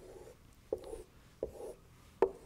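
A marker pen writing on a whiteboard. There are two short strokes, one at about 0.7 s and one at about 1.4 s, each a tap of the tip followed by a brief rub of the felt across the board.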